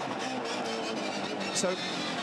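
A V8 Supercar engine heard through the in-car camera, running hard with its note holding steady and then stepping to new pitches as the gears change.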